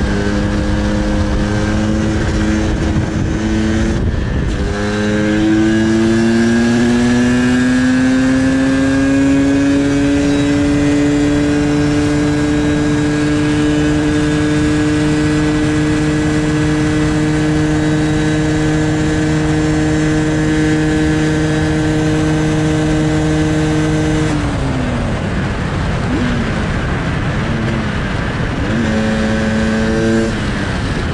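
Sherco 300 two-stroke supermoto engine running hard at road speed, with wind rushing over the microphone. About four seconds in the note breaks briefly, then its pitch climbs for several seconds and holds steady and high. Near the end the note drops away and falls, then picks up again.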